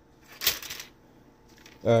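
A solid cleaning rod dropped down a gun barrel's bore gives one short metallic clack and rattle about half a second in, as it strikes an obstruction lodged in the bore and works like a slide hammer.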